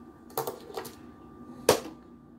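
Hard plastic clicks as a toy Land Shark vehicle is handled and set down on a plastic toy aircraft carrier deck: a few light clicks about half a second in, then one sharp, louder click near the end.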